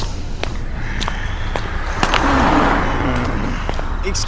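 City street background: a steady low traffic rumble, with scattered sharp clicks and a swell of noise about two seconds in.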